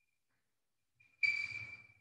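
Chalk squeaking on a blackboard: one short stroke of under a second, a thin high squeal over a scratchy hiss, starting a little past a second in and fading out.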